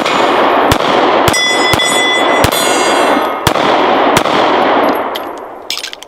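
Springfield EMP 9mm 1911 pistol fired in a quick string of about six shots over four seconds at steel targets. Each hit steel plate rings with a clang that hangs between the shots, and the ringing fades out about five seconds in. A few short metallic clicks come near the end.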